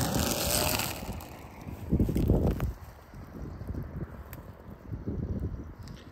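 Wind buffeting the microphone in irregular low gusts, after a loud hiss that drops away about a second in.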